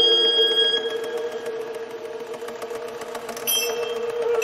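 Contemporary chamber music for Bb clarinet, alto saxophone and electronic fixed media, at a quieter passage: one note is held under a rapid run of clicks. A new high tone comes in sharply about three and a half seconds in.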